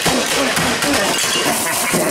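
Crashing and clattering of a desktop computer tower's metal case and parts being smashed, with a voice or other pitched sound mixed in.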